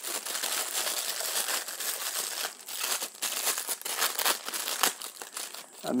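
Thin clear plastic bag crinkling and crackling as it is handled and pulled open by hand, a continuous run of irregular crackles.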